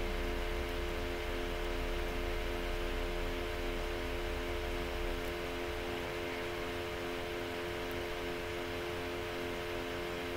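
Steady room hum: several steady tones held together over a faint hiss, with a low rumble underneath that fades out about halfway through.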